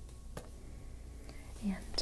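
A woman's soft whispering voice in a pause: a few faint clicks, then a short hummed vocal sound near the end, leading into an "um".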